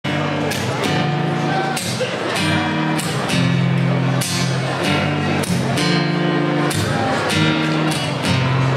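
Rock band playing live, an instrumental intro: strummed guitars over bass, with the chord changing about every second and repeated drum and cymbal hits.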